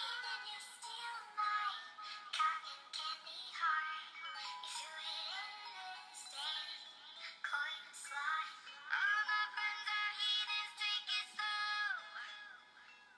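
Background song with a high singing voice carrying a melody, thin and without bass.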